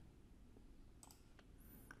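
Near silence with a few faint computer mouse clicks, about a second in and again near the end.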